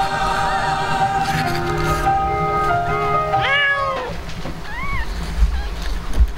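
A cat meows once, loud and drawn out, about three and a half seconds in, with short higher mews from newborn kittens around it. Under the first four seconds runs music with long held notes, which fades out after the loud meow.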